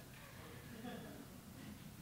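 Quiet lull in a lecture hall: faint room tone with faint, indistinct voices.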